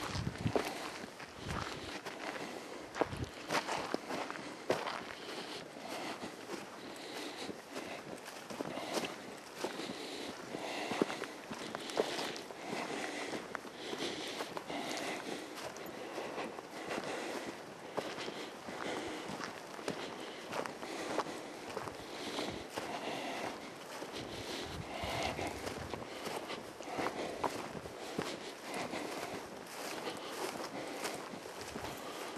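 Footsteps of someone walking outdoors: a continuous run of short, irregular steps.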